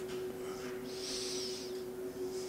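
Steady low hum from a microphone switched on for the next question, with a soft hiss about a second in.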